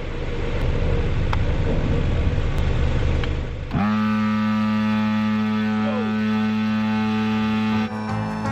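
A car idling with a low rumble; about four seconds in, a 12-volt electric paddle board pump switches on, its motor quickly rising to a steady, even hum as it starts inflating the board.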